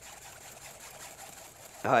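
Wire whisk rubbing and scraping against a fine double-mesh strainer, faint and steady, as flour paste is worked through the mesh into the stew.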